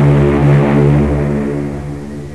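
A steady low drone with many evenly spaced overtones, pulsing slightly and slowly fading.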